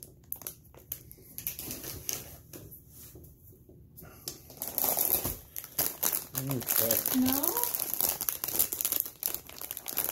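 Plastic chip bag being handled and crumpled, a loud, dense crinkling that starts about halfway through. Before that there are only a few light rustles.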